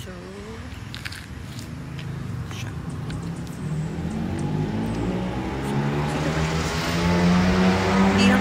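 A motor vehicle approaching on the road, its engine growing steadily louder throughout.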